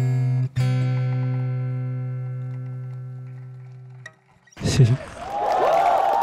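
Acoustic guitar's final strummed chord ringing and slowly fading away over about four seconds. After a brief silence, audience cheering and applause break out near the end.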